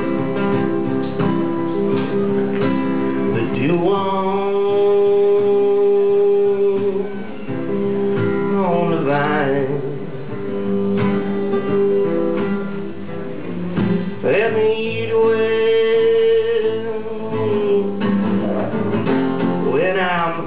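Acoustic guitar strummed and picked under a man's singing voice, which holds two long notes with slides at their ends: one about four seconds in, the other past the middle.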